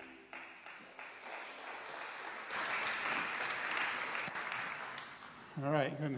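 A congregation applauding: the clapping starts softly and swells about halfway through, then fades as a man's voice begins near the end.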